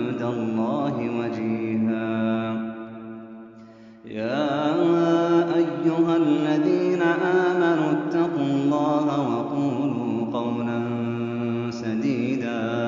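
A man's voice reciting the Quran in melodic tajweed style, drawing out long held notes. One phrase trails off about four seconds in, and the next phrase begins right after.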